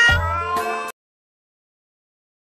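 A drawn-out, high-pitched voiced 'bye-bye' over background music, both cut off suddenly about a second in.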